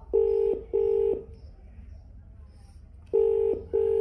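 Telephone ringback tone in the double-ring pattern: two short paired steady tones, heard twice, the sound of a phone call ringing out unanswered.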